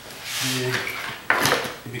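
Metal parts and wire clinking and rattling as they are handled on a cluttered workbench, with a sharp clank about a second and a half in.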